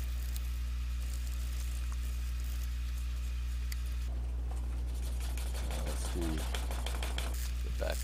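Wooden edge burnisher rubbing rapidly back and forth along a wetted leather edge, heard as quick rubbing strokes mainly in the second half. This is the friction that compacts the edge fibres to a shine. A steady low electrical hum runs underneath throughout.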